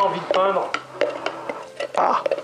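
A stick stirring paint in a pot, scraping with a squeak at first, then knocking against the sides in a series of irregular taps.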